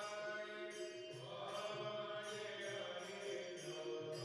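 Devotional music: a mantra chanted in long held notes over a steady rhythmic accompaniment.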